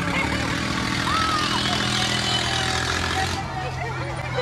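Fairground noise heard from a moving ride cabin. A steady low machine hum runs under a rushing hiss that stops suddenly a little over three seconds in, with a brief rising-and-falling pitched call or voice just after the first second.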